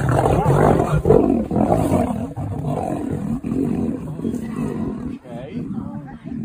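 Two male lions fighting over a mating lioness, with loud growls and roars that are strongest in the first two seconds and then carry on somewhat quieter.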